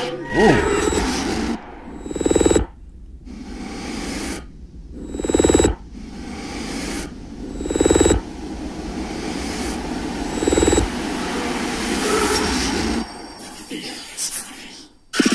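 Horror movie trailer score: four loud booming hits, about two and a half to three seconds apart, over a low droning bed that swells again near the end.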